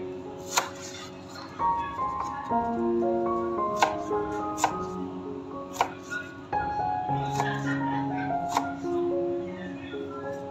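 Kitchen knife slicing a red radish on a plastic cutting board: a few sharp, irregular knocks of the blade meeting the board, over background music of held melodic notes.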